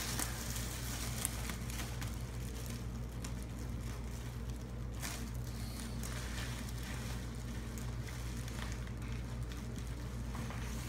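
Clear plastic bag crinkling and rustling in the hands in irregular crackles as parts are worked loose inside it, over a steady low hum.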